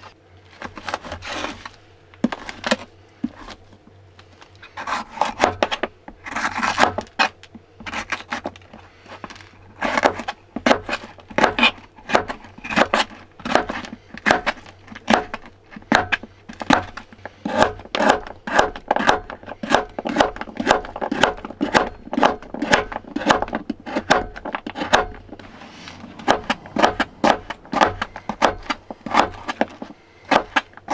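Kitchen knife cutting on a cutting board: slow slicing strokes through bacon at first, then a steady, quick run of chopping strikes as red bell pepper and carrots are cut.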